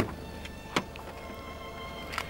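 Car boot latch clicking open and the lid being lifted: a sharp click at the start and a second click just under a second later.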